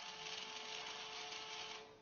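Small plastic-geared DC motor running steadily with a faint whine as it swings the model toll barrier closed. It stops shortly before the end.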